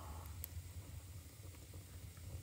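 Wood fire burning in a stove: a faint steady low rumble with a single sharp crackle about half a second in.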